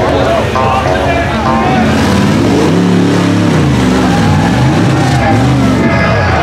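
Propane-fuelled LS 4.8 V8 of a fully hydraulic rock buggy revving up and down under load as it climbs, its pitch swinging up and down several times in the second half. Voices call out over the engine in the first couple of seconds.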